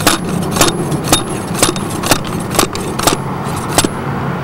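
Six-pound slide hammer of a golf hole cutter striking the top of the cutter blade in a steady rhythm, about two sharp metallic clinks a second, eight in all. The strikes drive the blade down into the green to cutting depth.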